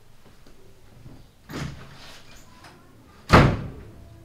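Two heavy thuds about two seconds apart, the second much louder, each dying away briefly.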